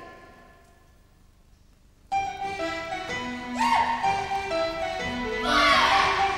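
A held note dies away to near quiet, then a live orchestra suddenly strikes up about two seconds in, playing sustained chords that grow louder near the end.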